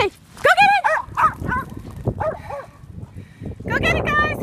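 Small dogs yapping: a string of short, high-pitched barks spread through the few seconds, with a quicker burst of yelps near the end.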